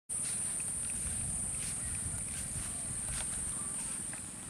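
A steady, high-pitched insect chorus drones without a break, with a low rumble underneath.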